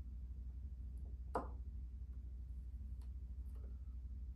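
Small clicks of thin wire ends being touched against battery terminals, with one sharper click about a second and a half in and fainter ones later. A low steady hum runs underneath.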